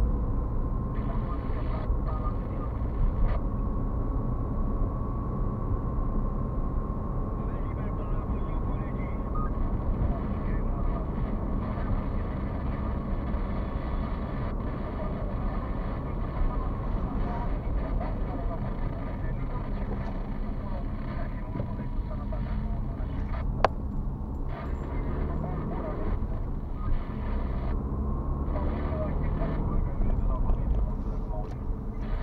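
Road and engine noise inside a moving car's cabin: a steady low rumble from the tyres and engine with a faint steady whine over it. A single sharp click sounds about three-quarters of the way through.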